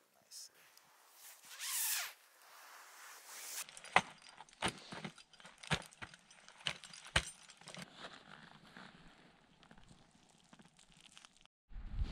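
Faint, sharp knocks, roughly two a second for a few seconds, from ice axes and crampons striking water ice as a climber leads up a frozen fall, after a few seconds of faint rustling of gear.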